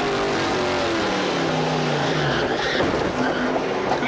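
Onboard sound of a NASCAR Pinty's Series stock car's V8 engine at racing speed, its note falling steadily from about a second in as the driver gets hard on the brakes into a corner. It is a late, panicked braking, an "oh-my-goodness mode".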